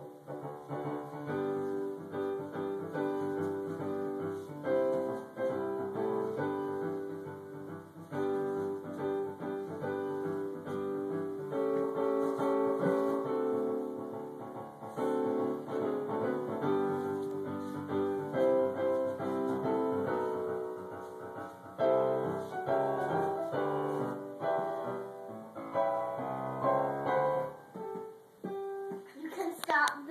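Piano music playing continuously, a steady run of held and repeated notes.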